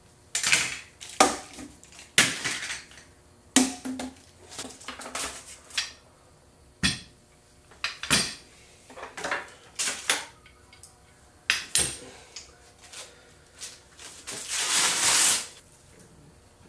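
Steel pipe clamps clanking and knocking as they are loosened and pulled off a glued-up wooden cutting board and dropped onto a concrete floor: a string of sharp, irregular metal clanks, with a longer scraping sound near the end.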